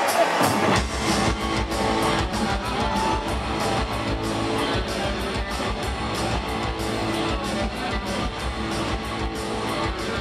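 Rock band playing live in an arena, heard from the crowd: electric guitar, bass and drums come in together about a second in and carry on with a steady, driving drum beat.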